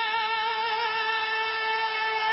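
One voice holding a long, steady sung 'ehooo' note with a slight vibrato.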